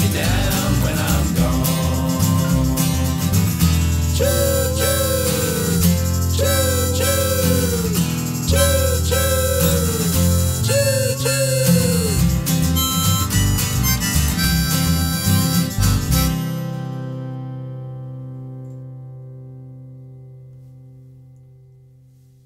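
Two acoustic guitars strumming the instrumental ending of a folk song, with four pairs of short, falling whistle-like notes over them, then a last chord that rings out and fades away.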